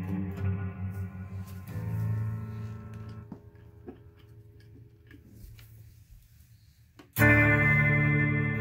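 Electric guitar played through a modulation pedal and a multi-effects unit. Chords ring and fade, with a new chord struck about two seconds in. The sound then dies away to faint plucks, and a loud chord is struck near the end.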